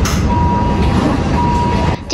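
Intensive care room sound: a loud, steady mechanical noise from the room's equipment, with a medical equipment alarm giving two long, high, steady beeps, the second near the end.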